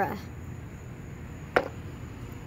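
A plastic toy horse figurine knocking once on concrete: a single sharp click about one and a half seconds in, over a faint steady outdoor background.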